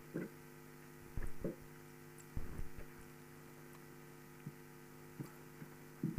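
Steady electrical mains hum, with a few short strokes of a felt eraser wiping a chalkboard in the first three seconds and two faint knocks later.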